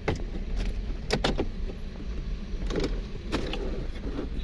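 Plastic interior trim panel of a 2020 Toyota Camry being pulled loose by hand: a string of sharp plastic clicks and knocks from its clips and edges, a quick pair about a second in and a cluster near three seconds, over a steady low hum.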